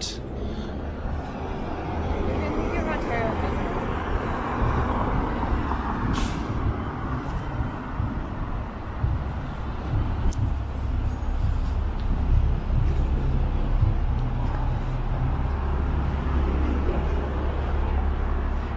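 Downtown street traffic with a steady low rumble that swells near the end, and a short sharp hiss about six seconds in.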